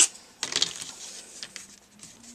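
A wooden ruler being picked up and laid across a paper plate on a tabletop: a sharp click about half a second in, then light scraping and rustling with a faint tick.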